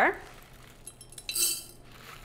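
Dry mung beans pouring from a container into a small measuring spoon: a few faint clinks about a second in, then a brief rattling clink about one and a half seconds in.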